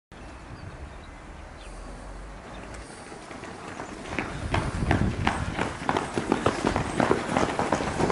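Footsteps of several people running in trainers on asphalt: quick, irregular footfalls that set in about four seconds in, over a steady outdoor hiss.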